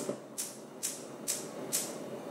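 Gas range spark igniter clicking as the burner knob is turned to high: five evenly spaced ticks, about two a second.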